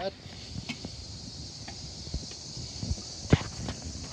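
A kamado grill's lid being opened: scattered small handling clicks and one sharp click about three seconds in, over a steady faint hiss.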